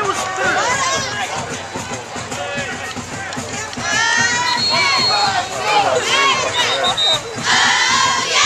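Football crowd and sideline players shouting and cheering, many voices overlapping. It grows louder about halfway through, with a brief shrill held note in the middle and a burst of shouting near the end.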